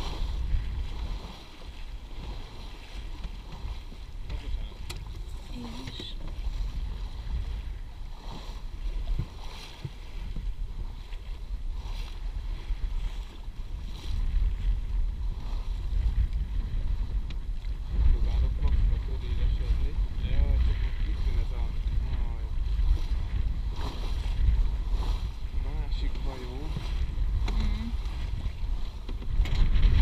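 Wind buffeting the microphone of a camera aboard a small sailing yacht under sail, with the wash of water along the hull. The wind rumble grows louder about halfway through and again near the end.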